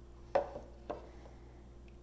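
A hand stirring yeast and water in a glass container: one brief sound of hand, water and glass about a third of a second in, and a fainter one just under a second in, over a quiet background.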